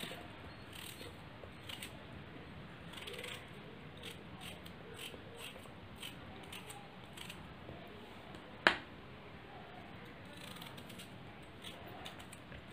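Faint, irregular crisp cuts of a small knife slicing a raw vegetable into small pieces held in the hand, a cut every half second or so. There is one much louder sharp click about nine seconds in.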